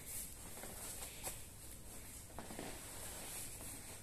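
Faint rustling and scuffing of two grapplers' cotton gis and bodies sliding and rolling on foam mats, with a few soft knocks.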